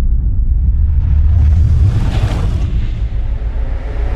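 Deep, steady rumble of an intro sound effect, with a whoosh that swells and fades about two seconds in.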